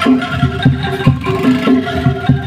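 Angklung street band playing: the bamboo tubes of the angklung sound tuned notes over a steady low drum beat, about three beats a second.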